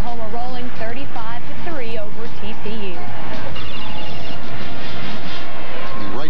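Mostly speech: a television sports commentator talking over a football highlight.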